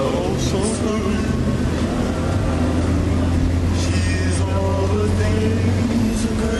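A man singing a rock-and-roll tune without spoken words, over a steady low hum, with a few short hissy accents.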